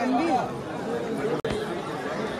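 Crowd chatter: several people's voices overlapping in a busy corridor.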